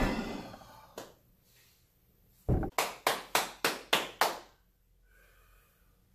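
A heavy impact on a hard gym floor dies away with a ringing tail, and a single knock follows about a second in. Halfway through comes a thud, then six sharp knocks in an even rhythm, about three a second.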